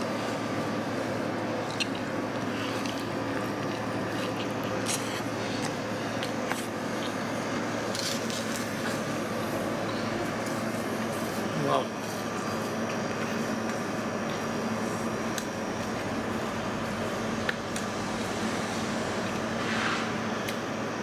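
Steady machine hum holding several even tones, under which a man quietly chews a mouthful of pizza.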